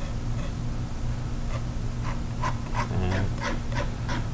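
Palette knife scraping across an oil-painted canvas in a run of short strokes during the second half, over a steady low electrical hum.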